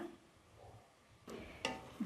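Mostly quiet, then near the end two faint clicks and a short scrape: a wooden spoon stirring food in a metal pot.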